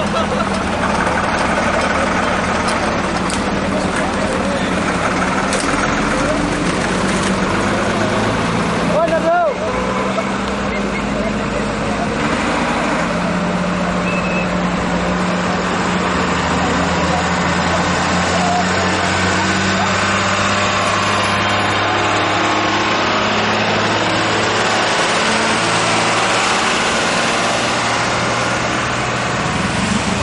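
Many people talking at once over running vehicle engines and road traffic, with a short wavering tone about nine seconds in.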